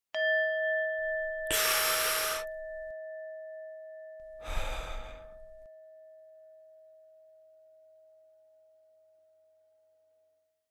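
A single struck chime rings out with a few overtones and slowly fades away. Over it come two long breath sounds, the first about a second and a half in and the second about four and a half seconds in.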